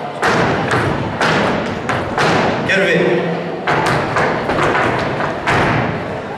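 Boots stomping on the floor in a gaucho dance step: a run of heavy thuds, roughly two a second and unevenly spaced, each ringing briefly in the hall.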